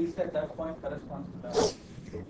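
Quiet, indistinct talk at a lecture, with a short hiss-like burst about one and a half seconds in.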